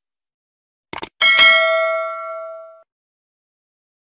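Two quick clicks about a second in, then a single bright bell ding that rings out and fades over about a second and a half. This is the stock sound effect of a subscribe-button animation: a mouse click followed by a notification bell.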